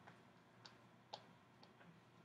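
Near silence, broken by a few faint, short clicks about half a second apart.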